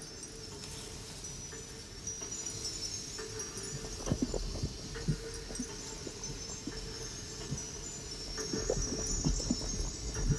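Film soundtrack music: a sustained low drone with thin, high held tones above it, and a few soft, irregular knocks about four seconds in and again near the end.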